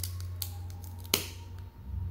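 Trading cards that are stuck together being pried apart by hand, giving a few sharp clicks with one loud snap about a second in. A steady low hum runs underneath and fades out near the end.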